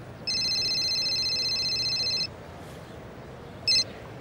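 Mobile phone ringing with a high, electronic trilling ring that lasts about two seconds. A brief start of the next ring comes near the end and is cut short as the call is answered.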